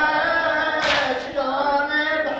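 A group of male voices chanting a Shia mourning lament (latmiyya) together. The recording is old and dull-topped, and a short, hissing accent comes from the group just before the middle.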